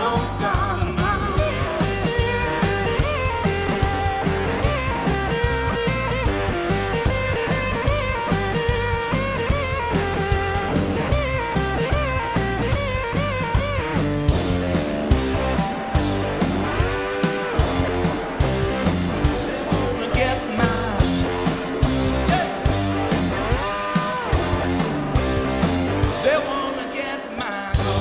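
Live blues-rock band playing: electric guitars, bass and drums with a steady beat and a tambourine shaken along. In the second half a lead line bends up and down in pitch, and the band drops back briefly just before the end.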